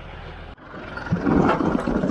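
Tractor engine running close by, with a steady low hum that breaks off suddenly about half a second in, then comes back louder from about a second in.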